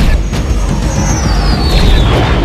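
Added action-film sound effects over a booming music score: a sharp blast or impact at the start, then a thin high whistle falling steadily in pitch for about a second and a half, over a heavy low rumble.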